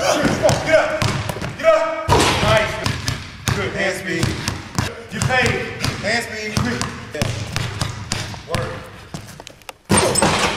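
A basketball bounced again and again on a hardwood gym floor during a dribbling drill, with a voice shouting over the bounces.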